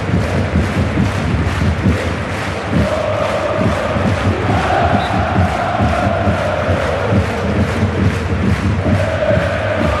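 Voices chanting in unison over a steady drum beat, the chant rising into long held notes partway through and again near the end.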